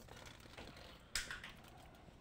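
Light handling noises of kitchenware on a counter: faint ticks and one sharp click about a second in.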